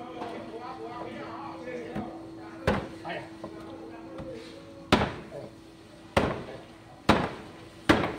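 A heavy long-bladed knife chopping down through a chunk of giant grouper onto a thick wooden cutting board. About five sharp chops land irregularly, a second or two apart, with a steady low hum behind them.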